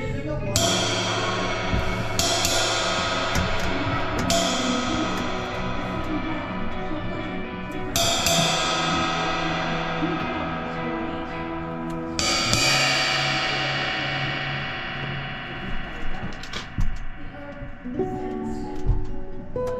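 A drum kit played with a band, heard close to the kit: crash cymbals struck about five times, each left ringing and fading, over held low notes. Near the end the crashes drop away, leaving a few sharp separate drum hits.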